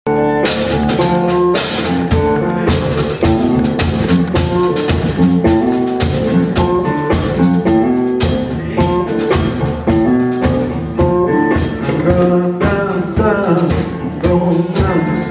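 Live blues: a hollow-body electric guitar played through a small combo amp, with a drummer keeping a steady beat on a small kit of snare, kick drum and cymbal.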